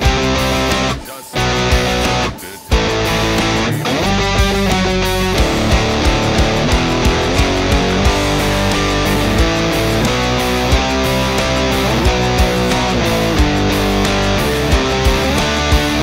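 Electric guitar playing power chords (B, F#, D) in drop-D tuning, with short stops about one and two and a half seconds in, then steady chugging to a regular beat.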